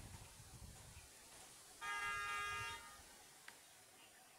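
A vehicle horn sounds once near the middle, a steady honk of about a second.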